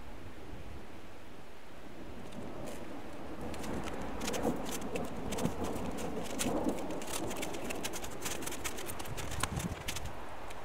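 Snow crunching as it is scooped up by hand and pushed into plastic milk jugs: a run of crisp crunches that grows busier a few seconds in.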